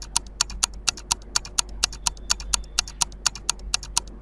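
Quiz countdown-timer sound effect: a clock ticking evenly at about four ticks a second, stopping as the time runs out.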